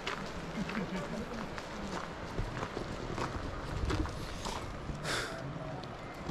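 Footsteps crunching on a gravel path, irregular sharp steps a few a second, with faint voices of people talking in the background.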